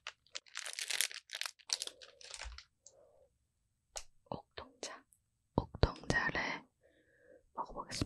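Close-miked mouth sounds at a milk-coated Okdongja ice cream bar: wet licks, lip smacks and sharp mouth clicks, in short irregular bursts. There is a dense run of them in the first couple of seconds, then scattered clicks.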